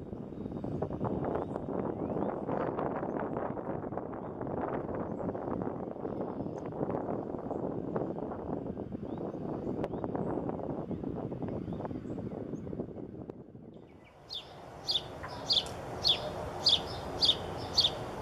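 A dense crackling rustle runs until it cuts off about fourteen seconds in. Then a bird calls in a series of short, high notes, evenly spaced at about two a second.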